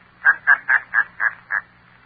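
A man's laugh, a run of short 'ha' pulses about four or five a second that stops about a second and a half in: the Shadow's trademark laugh in an old radio-drama recording, over a faint steady low hum.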